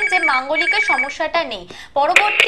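Telephone ringing on the studio's phone-in line over ongoing talk: a warbling electronic ring that alternates quickly between two pitches and stops a little after one second in.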